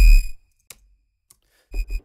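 Synth bass preset 'BASS – Feedback' on the Xfer Serum software synthesizer, played in short notes with a deep low end. One note dies away just after the start, and after about a second and a half of silence the next note begins near the end.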